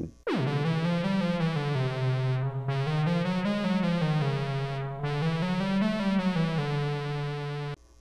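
An analog modular synthesizer played from its keyboard. It makes a buzzy, overtone-rich note pattern whose pitch steps up and down as the lowest keys transpose it. The sound cuts off abruptly near the end.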